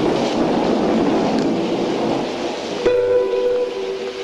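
Film soundtrack passage: a dense, noisy rumble with no clear notes, then about three seconds in a sudden, loud held chord of a few steady tones.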